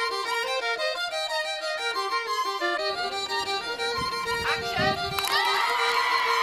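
Fiddle playing a quick dance tune, one fast run of stepped notes. About five seconds in, crowd voices shout and cheer over the music.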